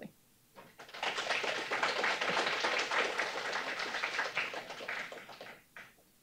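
Audience applauding: the clapping starts about a second in and dies away near the end.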